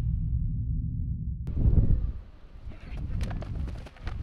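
A low electronic rumble, the tail of an animated logo sting, fades out. About a second and a half in, the sound cuts abruptly to outdoor field noise with a few sharp knocks.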